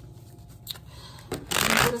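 Tarot cards being shuffled: quiet handling with a small click about a third of the way in, then a short, loud rush of cards near the end.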